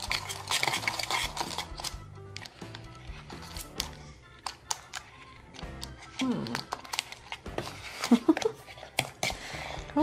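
Background music, with scattered small clicks and taps of a plastic quartz clock movement and its rubber washers being handled and pressed into place on the back of a clock.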